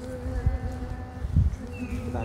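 A flying insect such as a bee or fly buzzing close to the microphone, its pitch wavering up and down as it moves. Two low thumps of wind on the microphone come about half a second and a second and a half in.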